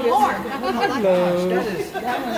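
People talking over one another, with one voice drawing out a long, steady vowel about a second in.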